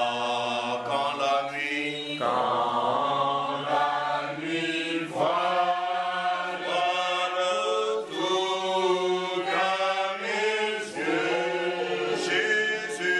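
A man's voice singing a slow, unaccompanied hymn in long held notes.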